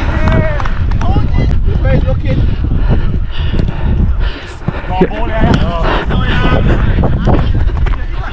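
Wind buffeting a body-worn action camera's microphone as the wearer runs, with footfalls on artificial turf and brief shouts from players.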